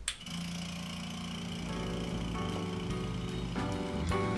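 Benchtop GAST vacuum pump switched on with a click, then running with a steady hum as it pulls vacuum for a Büchner-funnel filtration. Music comes in under it near the halfway point.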